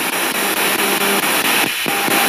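Spirit box radio sweeping through stations: a continuous hiss of static chopped into short steps about ten times a second, with faint fragments of broadcast tones, and a brief drop out near the end.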